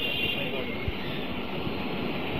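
Steady background hiss of a lecture recording during a pause in the talk, with one faint tick about a second in.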